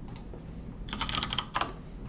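Computer keyboard typing: a quick run of keystrokes about a second in, lasting well under a second, as the CPlane command is typed into Rhino's command line.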